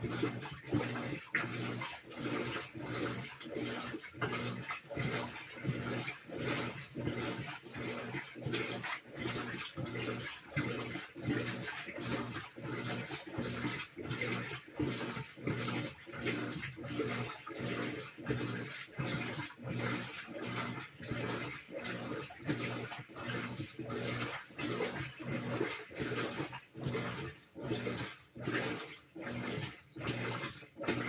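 Whirlpool WTW4816 top-load washer in the wash stage of a Normal cycle, turning the load back and forth in even strokes, about three every two seconds, over a steady motor hum, with water sloshing.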